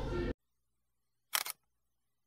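A camera shutter click, a quick double snap, about one and a half seconds in, set in dead silence. Just before it, café sound with voices cuts off abruptly.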